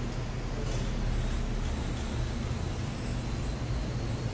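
A pause with no speech, holding only a steady low hum with faint hiss: the background noise of the hall picked up through the microphone.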